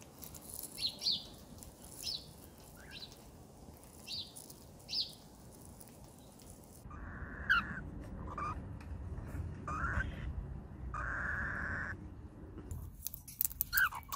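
Cockatiels calling. First comes a series of short, high chirps about one a second. Then, over louder background noise, come several raspy, drawn-out calls from the chicks in the nest box, the longest lasting about a second near 11 s.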